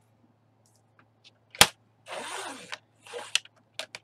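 Paper and a plastic paper trimmer and scoring board being handled: one sharp click a little over a second and a half in, then scraping slides of paper across the board and a few short clicks near the end.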